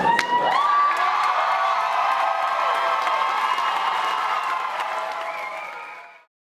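Live audience cheering and applauding with high-pitched screams as the music cuts off, then fading out near the end.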